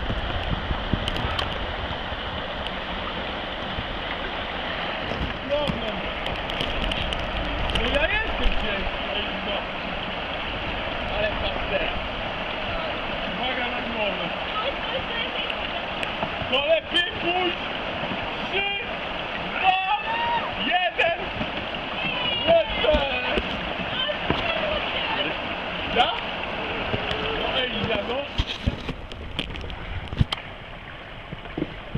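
Small river's water rushing steadily over and around a log jam of fallen trees, with voices calling out over it in the second half.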